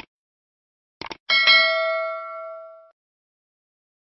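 Subscribe-button sound effect: a mouse click, then a quick double click about a second in, followed by a bright notification bell ding that rings out and fades over about a second and a half.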